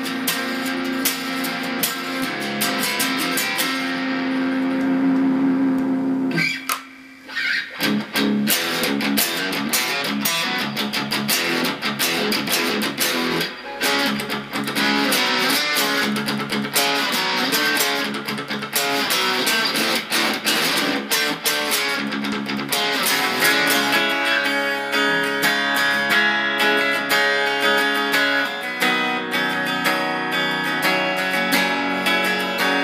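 Squier Telecaster Affinity electric guitar being played: one note held for about six seconds, a brief break, then continuous picked playing.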